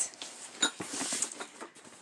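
A cardboard box being picked up and handled: a run of light scrapes, rustles and small knocks, with one sharper click about half a second in.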